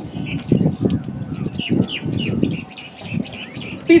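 Chalk writing on a blackboard, a run of irregular knocks and scrapes, with small birds chirping over it in quick, repeated falling notes.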